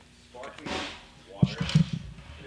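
A film clapperboard snapped shut once, a single sharp clack about one and a half seconds in, with a man talking around it.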